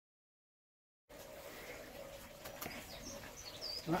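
Dead silence for about a second, then quiet garden ambience with a faint steady hum and a few short, high bird chirps toward the end.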